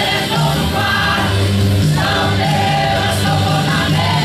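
A small mixed church choir of men and women singing a gospel hymn together, over held low notes from the accompaniment.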